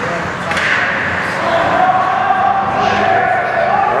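Ice hockey game play in an indoor rink: a sharp crack of a stick or puck about half a second in, over a steady din of skates and spectators' voices, with one long held shout from about a second and a half in.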